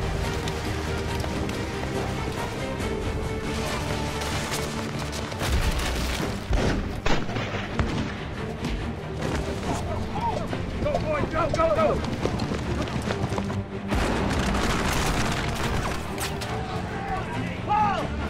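Black-powder musket fire and booms over a film music score, with men shouting. The shots come as a few sharp cracks about a third of the way in, and the shouting is heard in the second half.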